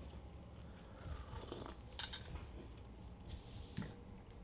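Faint sipping and swallowing from a glass mug, with a few small clicks, the sharpest about two seconds in.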